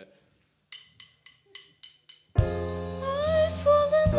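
A count-in of about five sharp clicks, roughly three a second, then about two and a half seconds in the live band comes in with sustained keyboard chords over a strong bass for a slow ballad.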